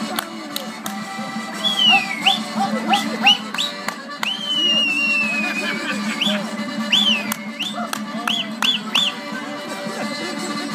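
Music playing, with a run of high whistles over it: short quick upward-sliding whistles, several falling away again, and one long slowly falling whistle near the middle.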